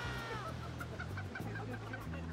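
Music: a held high note bends down, then a quick even run of short clipped notes, about six a second, plays over a steady bass line.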